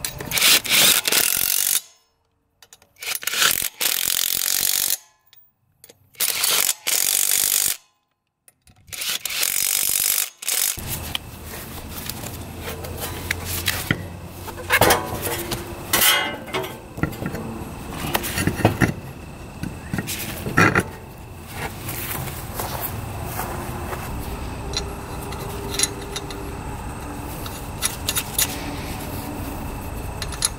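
Cordless impact wrench run in several loud bursts, tightening the lug nuts on an ATV wheel, with abrupt silent gaps between them. After about eleven seconds, quieter handling sounds follow, with scattered clicks and knocks as a wheel is fitted and a lug nut is threaded by hand.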